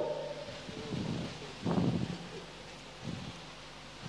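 A pause in the speech: faint room noise, with a short rustle a little under two seconds in and a softer one just after three seconds.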